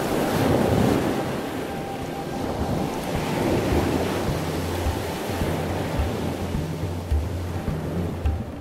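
Ocean surf: waves washing in, swelling about a second in and again a few seconds later, mixed with music whose low bass notes grow stronger in the second half.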